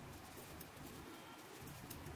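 Faint hand-knitting sounds: thin metal needles ticking lightly against each other as stitches are purled, over a low background hum.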